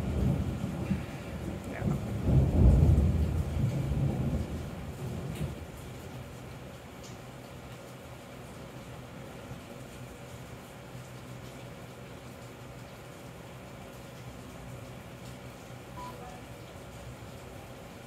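Thunder rumbling close by, loudest about two to three seconds in and dying away after about five seconds. Steady rain continues after it.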